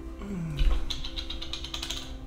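A man gives a short falling groan after gulping blue cheese dressing, then a glass-and-counter thump as the bottle comes down about half a second in, followed by a fast run of clicks, over quiet background music.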